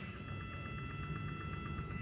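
Faint steady electrical whine of several high tones over a low hum, slowly getting a little louder.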